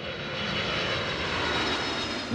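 Jet airliner flying overhead: a steady rushing engine noise that swells during the first second, with a thin high whine over it.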